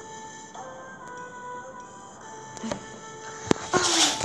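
Background music from a children's Bible story app, held notes changing every half second or so. Near the end, a sharp click and then a loud, brief rustling scrape as a hand touches the device close to the microphone.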